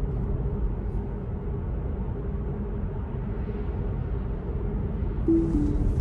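Steady tyre and road noise inside a Tesla's cabin at about 40 mph. Near the end, a short two-note chime stepping down in pitch: the Autopilot disengagement alert as the driver takes over from Full Self-Driving Beta, which was steering into a turn lane.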